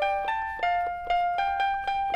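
Electronic piano keys of a VTech Strum & Jam KidiBand toy being played: a simple tune of single synthesized notes, one after another, about two to three a second.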